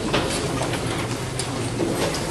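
Audience applauding steadily, a dense crackle of many hands clapping.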